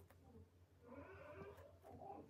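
Near silence: faint room tone with a steady low hum, and a faint drawn-out cry lasting about a second, starting a little under a second in.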